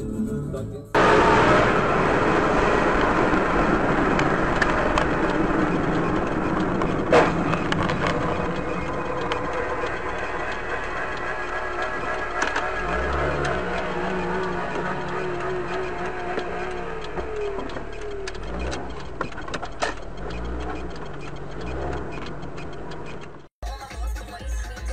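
Dashcam audio from inside a moving car: steady road and engine noise with music playing, and a sharp knock about seven seconds in.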